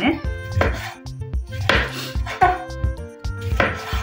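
Kitchen knife slicing a lemon into rounds on a wooden cutting board, several separate cuts about a second apart, with background music.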